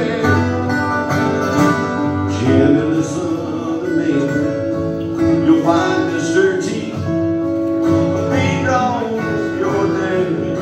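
Two acoustic guitars playing a country tune together, with a man singing over them at times.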